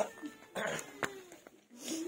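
Puti fish being scaled against a fixed boti blade: a few short scratchy scraping strokes and a sharp click about a second in. A faint, wavering call sounds in the background.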